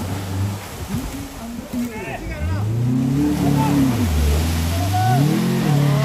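Small 4x4 SUV's engine revving hard in two rising-and-falling swells as it powers through and climbs out of a mud pit, with people's voices in the background.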